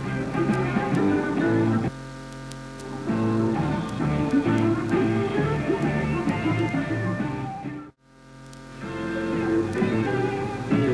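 Rock band playing live with electric guitar, recorded as an 8mm film's original lo-fi soundtrack. The sound cuts out suddenly about eight seconds in and fades back up within a second.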